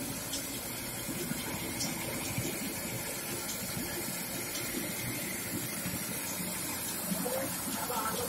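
Motor-driven stone flour mill (atta chakki) running steadily, its millstones grinding wheat grain into flour.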